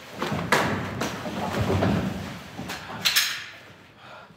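Hand-to-hand fighting against an attacker in a padded protective suit: blows thudding on the padding and boots scuffling on a wooden floor, with several sharp thumps, the loudest about half a second in.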